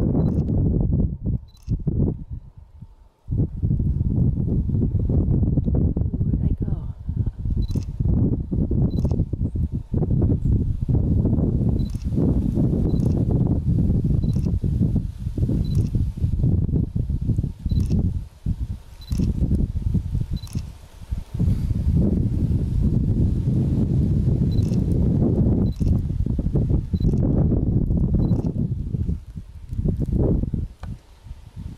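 Strong wind buffeting the microphone in loud, rumbling gusts that drop out briefly a few times. Under it come faint high clicks, about one a second.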